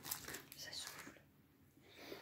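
Faint rustling of handled packaging that dies away to near silence about a second in.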